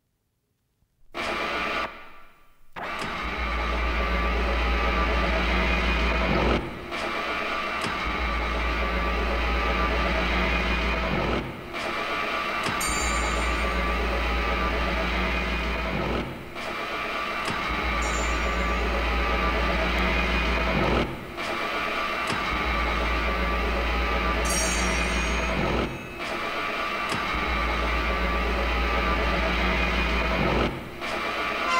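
Experimental tribal electronic music begins about a second in. A deep bass drone plays under a dense mid-range texture and cuts out briefly about every five seconds, in repeating phrases, with a cluster of high bleeps twice.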